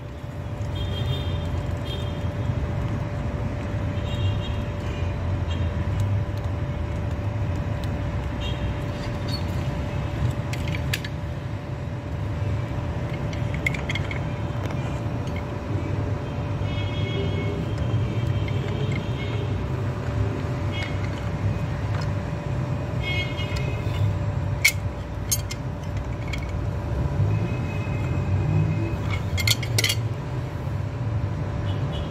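Calpeda electric water pump motor running with a steady hum on a test run after reassembly. Short high-pitched tones come and go over it, with a few sharp clicks.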